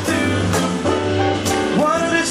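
Live jazz combo of electric guitar, piano, double bass and drums playing a swinging tune, with a singer's voice on top that slides upward near the end.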